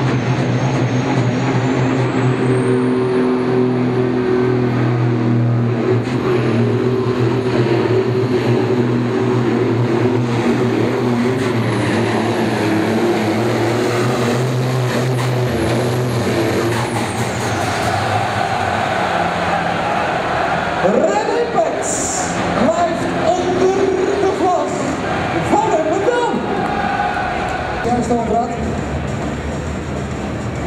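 Turbocharged engine of a red International pulling tractor running flat out through a pull, with a high whine climbing in pitch over the first few seconds. Engine and whine wind down after about seventeen seconds, and a man's voice then talks over the arena.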